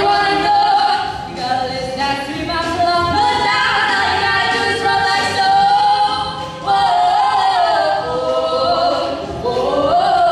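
Two young female voices singing a show-tune duet through handheld microphones, with long held notes and several slides in pitch.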